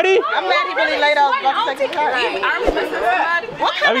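Several people talking over one another: overlapping group chatter.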